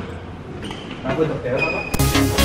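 Indistinct voices in a large sports hall, with a brief high squeak near the end.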